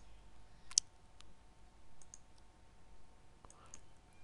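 Computer mouse button clicks: several short, faint clicks spaced irregularly, the loudest under a second in, as line end points are clicked in a CAD sketch.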